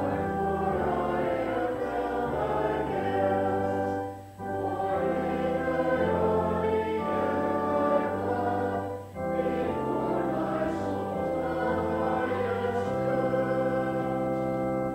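Congregation singing a hymn in unison with keyboard accompaniment, the sustained phrases breaking briefly about four and nine seconds in.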